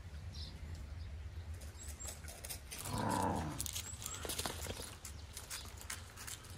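A dog makes a short low vocal sound about halfway through. Light clicks and patter follow, with a few faint bird chirps over a steady low background hum.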